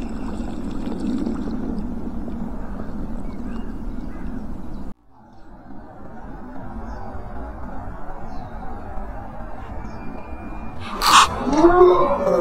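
Steady low splashing and rushing of water around a float tube being finned along. The noise cuts off suddenly about five seconds in, then returns more quietly. Near the end there is a sharp knock and a brief wavering vocal sound.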